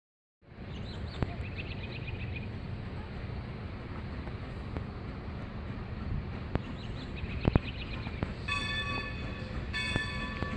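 Steady low outdoor rumble, then about two-thirds of the way in a distant steam locomotive whistle sounds a sustained chord, broken briefly once near the end.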